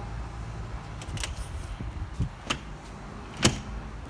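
Sharp clicks and a knock from an RV's exterior storage compartment door and its latch being handled, the loudest click near the end as the door is opened, over a steady low rumble.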